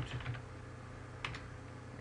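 Computer keyboard being typed on: a few soft keystrokes, then two sharper key clicks close together a little past halfway.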